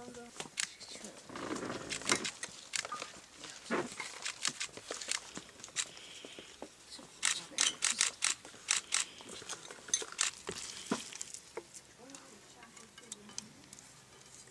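Wet clicks and taps of hands working tarhana dough in a plastic bowl, coming fast and thickest about halfway through, with faint voices behind.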